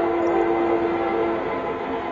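A supporter's horn blown in a stadium crowd: one long steady note lasting nearly two seconds, over the noise of the crowd.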